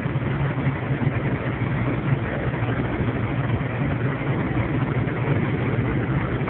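Steady low engine drone and tyre noise on wet pavement, heard from inside a truck cab at highway speed.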